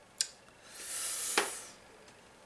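A man's breathy exhale through the mouth, about a second long, with a sharp lip-smack click near its end and a smaller click just before it: a satisfied breath out after a sip of beer.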